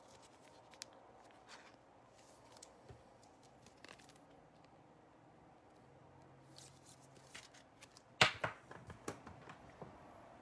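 Faint scattered clicks and rustles of cards being handled, then about eight seconds in a louder run of scraping and rustling as a trading card is slid into a clear plastic toploader.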